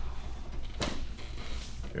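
A chiropractic thrust into the upper back gives one short, sharp pop or thud a little under a second in, timed to the patient's full exhale.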